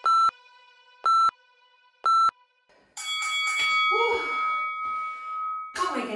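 Workout interval timer counting down the end of a work period: three short electronic beeps about a second apart. A longer, noisier end-of-interval signal with a held tone follows and lasts nearly three seconds.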